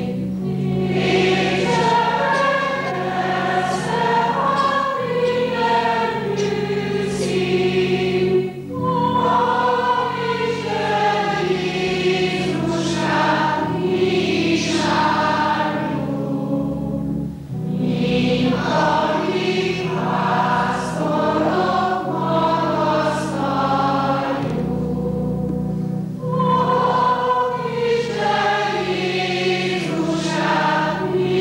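Secondary-school chamber choir singing in parts, in phrases of about eight to nine seconds with brief breaks between them, over steadily held low notes.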